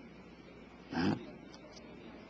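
A single brief vocal sound from a man, about a second in, over otherwise quiet room tone.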